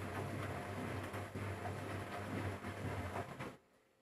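Electrolux EWF10741 front-loading washing machine running, a steady low hum under an uneven mechanical noise, which cuts off suddenly about three and a half seconds in. A sudden stop mid-wash is the fault being checked: the machine shuts down a few minutes into the cycle.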